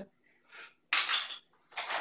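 Spoon on kitchenware: a faint tap about half a second in, then a brief clink and scrape about a second in.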